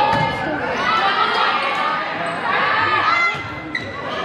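Volleyball rally in a school gym: sharp hits of the ball on forearms and hands as it is passed, set and attacked, with players and spectators calling out and shouting. The sounds echo in the large hall.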